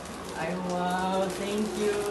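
A person's drawn-out exclamation of surprise ("ay wow"), a held, fairly level vocal sound starting about half a second in, then a shorter second one near the end.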